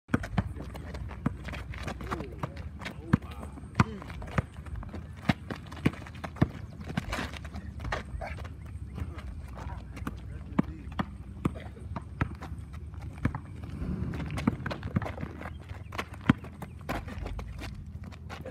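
A basketball dribbled on an asphalt court: repeated sharp, irregular thuds of the ball hitting the ground, mixed with sneaker steps.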